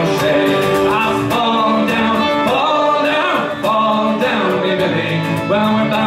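Live Irish folk music: a fiddle and a strummed steel-string acoustic guitar playing together, with singing.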